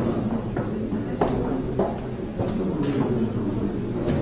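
Room noise of a large hall with people working at tables: a steady low rumble with a few scattered knocks and clicks.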